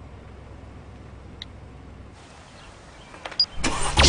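A car's engine idling quietly, with a single click partway through and a few clicks and a brief high beep near the end.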